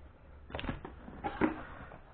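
Two brief, faint scrapes from a plastic ATV body panel being handled, about half a second and a second and a half in.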